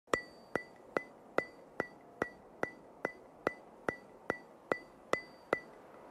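A ticking sound effect: a steady run of about fourteen sharp, evenly spaced ticks, a little over two a second, each with a brief high ring. The ticks stop shortly before the end.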